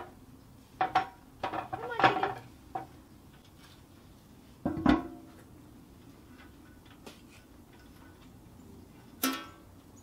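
Metal clanks and scrapes from a Pit Barrel Cooker: its steel lid and the hook holding a smoked chicken knocking against the barrel and its rebars as the chicken is lifted out. Separate clanks, some briefly ringing, come about a second in, around two seconds, near five seconds and near the end, with quiet between.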